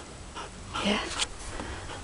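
Quiet breathing and soft sounds from a standard poodle, in a few short breathy bursts, with a brief spoken word about a second in.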